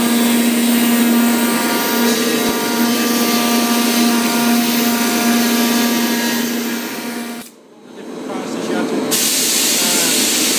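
CNC router running: a steady high-pitched hum from the spindle over a dense hiss. The sound drops away suddenly about seven and a half seconds in, builds back up, and turns into a loud hiss near the end.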